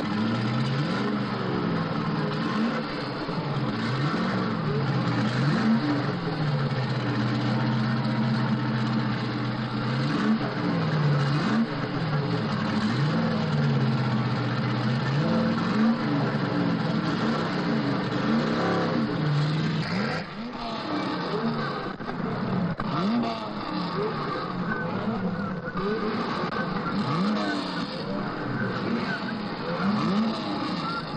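Racing sports-prototype engines running and revving, their pitch rising and falling again and again. In the later part several engines rev over one another.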